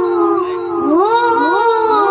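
A boy's voice reciting a naat through a microphone and PA, unaccompanied and sung in long, wavering held notes. About a second in, the pitch dips and slides upward.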